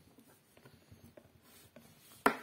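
Near silence, with faint rubbing and a few small clicks of a wire being handled at the spade terminals of a small electric gear motor.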